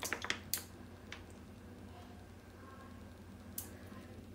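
Faint handling of a plastic ketchup squeeze pouch while ketchup is squeezed into a small ceramic bowl: a few soft clicks and crinkles in the first half-second and one more near the end, over a steady low room hum.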